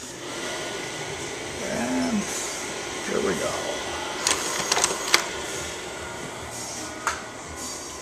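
Vivitar 3000AF slide projector running with a steady fan hum. Its slide-change mechanism clicks three times about four to five seconds in and once more near seven seconds as a slide is dropped into the gate.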